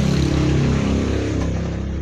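A steady, loud low mechanical hum with a hiss over it, easing off slightly near the end.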